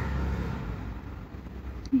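Low rumble of a passing motor vehicle, fading away.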